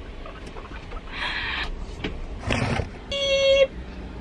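Bus engine running, heard from the driver's seat inside the cab, with a knock about two and a half seconds in and a short, steady high-pitched tone near the end.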